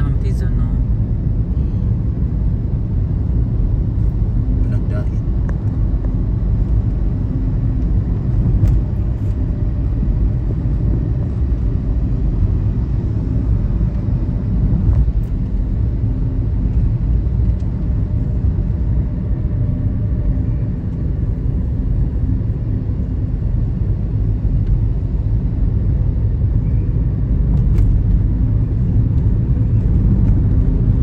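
Steady low rumble of a moving car: road and engine noise.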